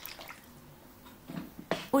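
Hot water poured in a thin stream into a roasting tray of bones and sauce, a faint splashing trickle that stops partway through.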